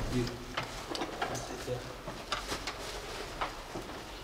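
Quiet classroom during a pause in the teaching: scattered small clicks and taps, with faint, brief voices in the background.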